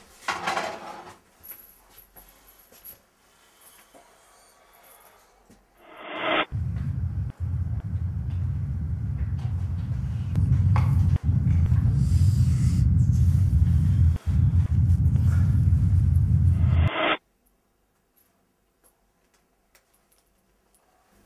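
A deep, low music drone comes in about six seconds in, grows louder around ten seconds, and cuts off suddenly a few seconds before the end.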